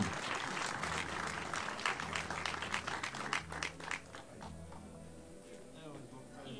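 Audience applauding, the clapping thinning out and fading after about four seconds.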